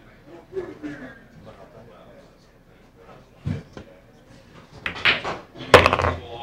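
A pool cue strikes the cue ball, followed by sharp clicks of billiard balls colliding. The loudest crack comes just before the end.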